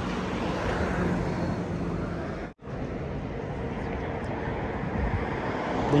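Road traffic noise dominated by a city bus passing close by, its engine humming low over tyre and road noise. The sound cuts out briefly about two and a half seconds in.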